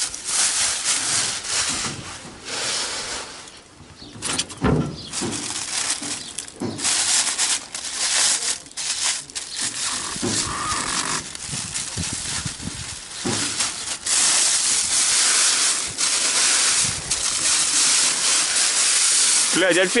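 Plastic bags crinkling and rustling in irregular bursts as they are pulled off and handled at a combine engine, loudest in the last several seconds.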